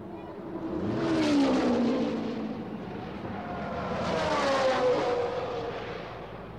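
Two racing cars passing at speed one after the other, each engine note swelling and then dropping in pitch as it goes by, the first about a second in and the second near the end.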